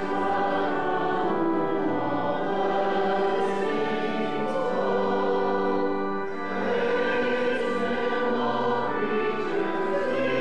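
Congregation singing a hymn together with organ accompaniment, in long held notes.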